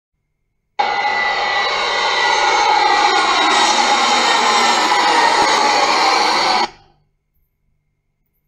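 Twin-engine jet airliner passing low overhead, its engine whine slowly falling in pitch as it goes by. The sound starts suddenly about a second in and fades out quickly near the end.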